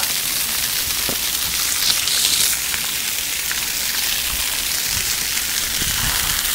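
Splash-pad fountain jets spraying and pattering onto wet concrete: a steady hiss of falling water, briefly louder about two seconds in.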